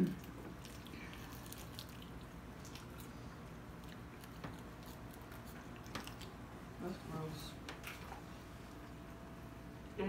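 Faint chewing and wet mouth sounds of people eating sauced chicken wings, with a few small scattered clicks and smacks over low room noise.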